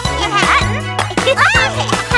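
Children's cartoon background music with a steady bass line, and short, high-pitched wordless cartoon voice exclamations over it.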